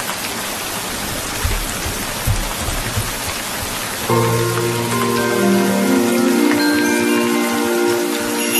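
Steady rain falling, an even hiss, with a couple of soft low thumps in the first half. About four seconds in, background music of held notes with light chime-like tones enters over the rain and becomes the loudest sound.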